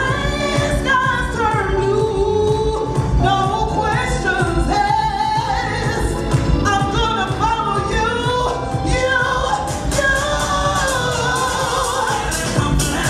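A woman singing live into a handheld microphone over a house music track with a steady beat, her voice amplified through a PA system.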